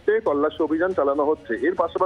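A man speaking Bengali in continuous reporting speech, coming over a phone line that sounds thin and narrow.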